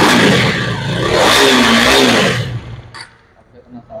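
KTM Duke 250's single-cylinder engine revved briefly through its underbelly exhaust, the pitch climbing and falling back, before the sound falls away about three seconds in.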